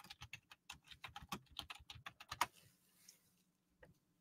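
Faint computer-keyboard typing, a quick run of keystrokes that stops about two and a half seconds in, then one more click near the end.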